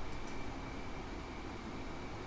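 Quiet steady background noise of a room, with no speech, only a couple of faint ticks just after the start.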